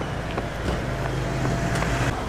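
Street sound dominated by a car engine running with a low steady hum, with a few faint light taps, typical of footsteps on asphalt.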